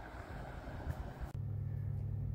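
Faint open-air wind and water noise, then an abrupt change a little over a second in to a steady low machinery hum inside a boat's cabin.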